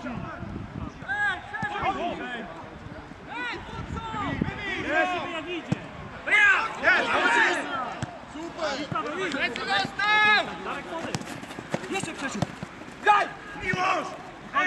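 Men shouting to each other across a football pitch, the loudest calls about halfway through and again around ten seconds in, with occasional dull thuds of the ball being kicked or headed.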